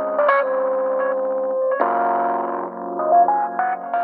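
Relaxed lo-fi background music: sustained chords with notes picked out over them, changing to a new chord about two seconds in.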